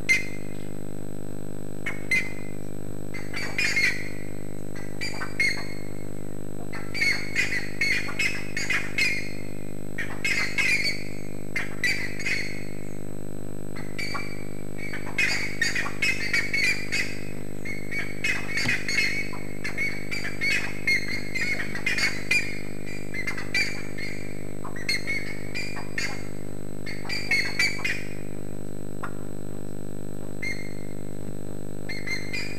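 Birds giving repeated short, harsh squawking calls in irregular clusters throughout, over a steady low hum.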